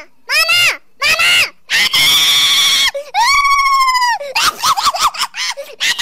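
A high-pitched voice squealing in a string of rising-and-falling cries, with two longer held shrieks in the middle and a quick run of short squeals near the end.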